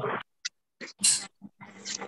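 Short, broken fragments of a voice over a video call, with a brief hissing breath or 's' sound about a second in and fully silent gaps between, as the call's audio cuts in and out.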